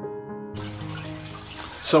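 Soft background music with sustained, held notes. A man's voice begins at the very end.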